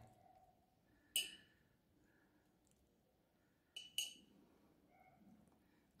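Three light clinks of metal plating tweezers against dishware: one about a second in and a close pair near four seconds, with near silence between.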